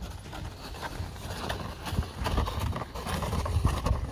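Boots crunching through snow at a steady walking pace, with a plastic sled sliding along the snow behind.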